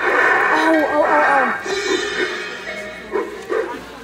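Animatronic cymbal-clapping monkey Halloween prop playing its soundtrack through its speaker: wavering, screeching monkey-like cries over music. The sound is loudest in the first second or so and fades toward the end, with a couple of sharp clashes near the end.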